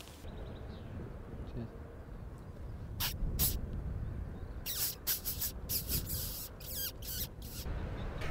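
Wind rumbling on the microphone in open country, with a series of short, high chirping calls starting about three seconds in and coming thickest near the end.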